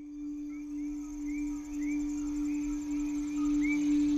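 A single steady low humming tone held like a singing bowl or drone, swelling slightly, with faint short high chirps scattered over it.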